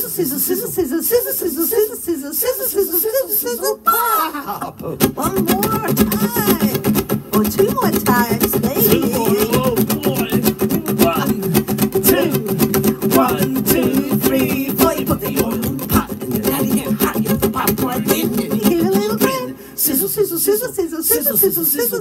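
A children's song about making popcorn, sung with strummed acoustic guitar accompaniment.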